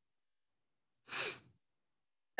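A person's short sigh into the microphone, once, about a second in.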